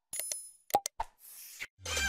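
A string of short plopping pops with a brief ringing chime among them, then music with a beat starting near the end.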